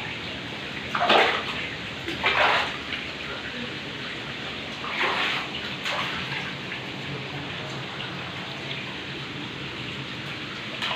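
Bare feet splashing through shallow running water over rock, with a few louder splashes (about a second in, near two and a half seconds and near five seconds) over the steady wash of the flowing water.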